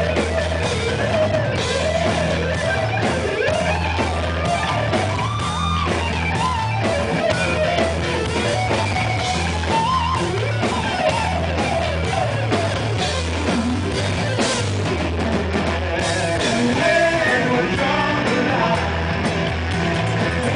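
Live hard rock band: an electric guitar plays a lead line with bending, sliding notes over a steady bass guitar and drum kit.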